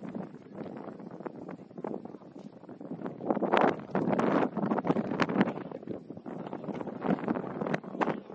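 Wind buffeting the camera's microphone, swelling into a louder gust from about three seconds in until past the middle, with a few sharp knocks scattered through it.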